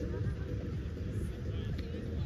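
Voices of people playing volleyball, faint and indistinct, over a steady low rumble.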